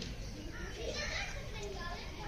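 Background chatter of voices, children's among them, with no clear words.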